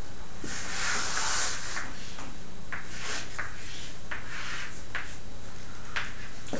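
Chalk on a blackboard: a longer rustle about half a second in, then a run of short scratchy strokes as a diagram is drawn, over a steady low hum.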